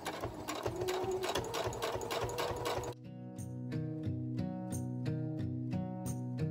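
Electric sewing machine stitching rapidly through a folded fabric strap, with fast, even needle clicks over a motor whine that rises in pitch as it speeds up. About halfway through, it cuts off abruptly to background music of plucked notes.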